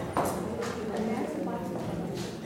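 A dancer's footsteps knocking on a wooden stage floor, a few separate steps, under a murmur of audience voices.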